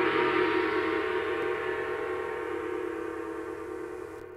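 Intro logo sound effect: a gong-like ringing chord of several steady tones, brightest at the start, slowly dying away.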